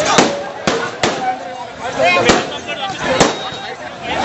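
Firecrackers bursting on a street, about five sharp bangs at irregular intervals, over a crowd's shouting.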